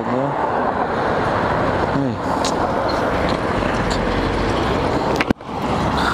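Road traffic passing on a busy road: a steady, loud rush of car and engine noise. There is a brief break in the noise just after five seconds.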